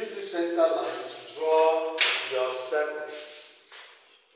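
A man speaking at a moderate level, in phrases with short pauses; the recogniser wrote down none of the words. There is a brief sharp hiss about halfway through.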